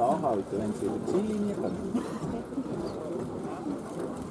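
Hoofbeats of a pair of horses trotting and pulling a carriage, with people talking over them.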